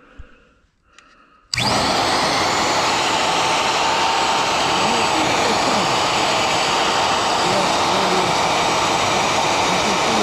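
Porter-Cable 90690 router's universal motor switched on about one and a half seconds in, coming straight up to speed and running steadily at full speed under no load.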